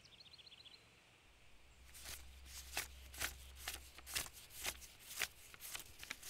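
Faint soft scuffs or rustles, about two a second, starting about two seconds in over a low hum, with a few faint bird chirps at the very start.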